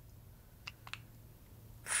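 A quiet pause of room tone broken by two faint small clicks, one just after half a second in and one about a second in.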